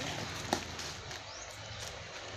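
Bubble-wrapped package rustling faintly as it is handled, with one sharp click about half a second in and a couple of faint short rising squeaks.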